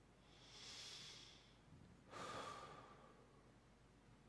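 One person's slow, deliberate breath, faint and close: a soft breath in about half a second in lasting around a second, then a breath out starting just after two seconds in and trailing away, part of a guided inhale-and-exhale calming exercise.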